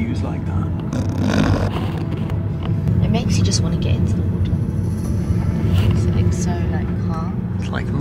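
Steady low drone of a car cabin while driving, engine and road noise, under people talking.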